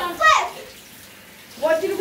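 Shower water running in a tiled stall, a steady hiss that is heard plainly in a lull between voices. A short high exclamation with falling pitch comes just at the start, and speech returns near the end.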